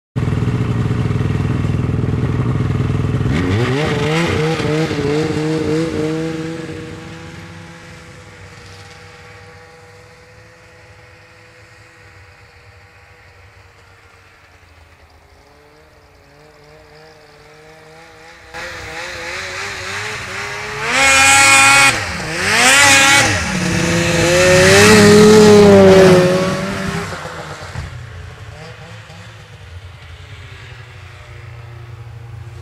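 Polaris XC SP 500 snowmobile's two-stroke twin running through a SnoStuff Rumble Pack exhaust can. It is loud at first and revs up a few seconds in, then fades off into the distance. In the second half it comes back loud, revving hard with the pitch rising and falling, and fades again near the end.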